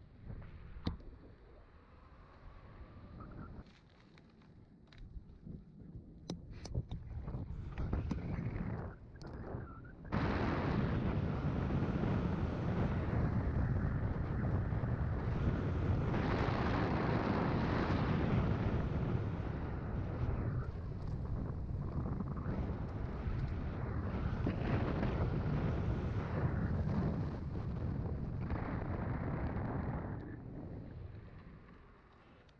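Wind rushing over the microphone of an electric bike's ride camera while the bike runs on its hub motor along pavement, with a few knocks over the first ten seconds. About ten seconds in the rush jumps to a steady, much louder level.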